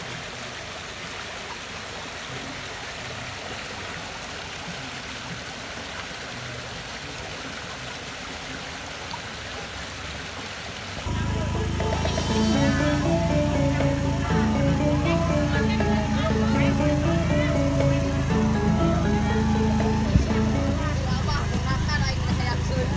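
A rocky stream rushing over boulders, a steady even wash of water. About halfway through it cuts abruptly to louder music: a melody of stepping notes over a steady low drone.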